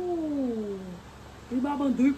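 A man's drawn-out "ooh" of amazement, one long cry sliding down in pitch for about a second. More of his voice comes in near the end.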